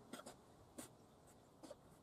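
A red fox chewing food: about three faint clicks of its mouth over near silence.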